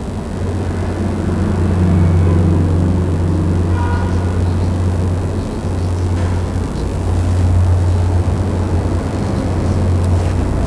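A loud, steady low rumble of background machinery that hardly changes.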